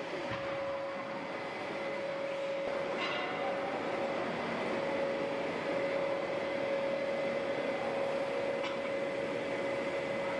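A two-layer blown film extrusion line running: an even machine drone with a steady whine over it.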